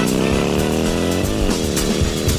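A motor vehicle engine accelerating, its pitch rising steadily. About a second and a half in the pitch dips briefly, as at a gear change, then holds.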